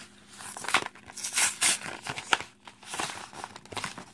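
Plastic blister packaging with a cardboard backing crinkling and crackling in irregular bursts as hands work at opening it.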